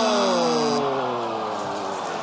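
Game-show time-up signal, a steady electronic tone that cuts off suddenly about a second in, under a long drawn-out 'ohhh' falling slowly in pitch, a groan of disappointment as the clock runs out.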